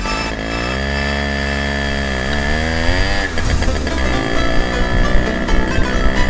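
Simson moped's two-stroke engine revving up as the bike pulls away. It holds a steady note, then the pitch drops about three seconds in. Music is mixed in toward the end.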